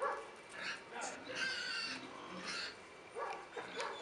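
A dog whining faintly in several short, high-pitched calls.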